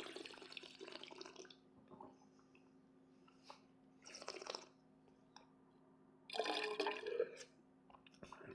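Faint wet slurping as wine is sipped and drawn through the mouth while tasting, lasting about a second and a half at the start, followed by two more short slurping sounds, one a little past the middle and a slightly longer one near the end.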